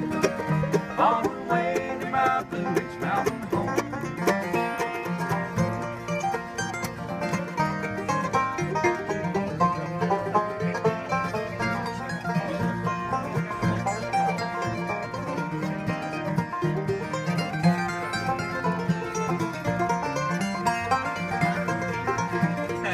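Acoustic bluegrass band playing an instrumental break between sung verses: five-string banjo, acoustic guitar, mandolin and fiddle together, with no singing.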